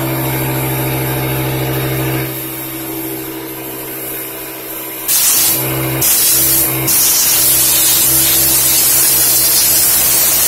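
Compressed air hissing from an air nozzle as lint is blown out of a Pfaff Hobbylock 788 serger's base plate. There is a short blast about halfway through, then a longer continuous blast from about two-thirds of the way in, over a steady low hum.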